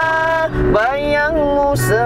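A man singing an old Indonesian pop song over guitar backing music. He holds two long notes and sings deliberately off-key, out of tune with the accompaniment.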